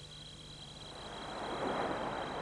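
The last of the background music fades out, then a rushing noise with no pitch swells up over the second half.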